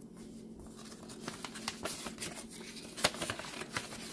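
Paper envelope being handled and opened by hand: crinkling and rustling of paper with scattered small clicks, and one sharper click about three seconds in.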